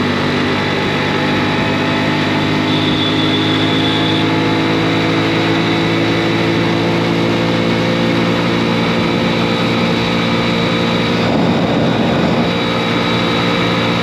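Small motorcycle engine running at a steady cruise, its note holding even pitch, with a brief rougher patch about eleven seconds in.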